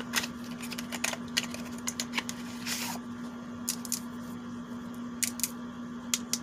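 Light handling noises of a small plastic skincare bottle and its packaging: scattered clicks and taps, with a short rustle about three seconds in, over a steady low hum.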